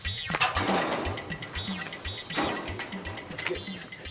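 Background music with a steady low beat, over which a sheet-metal gate rattles twice: once about half a second in and again just past two seconds in.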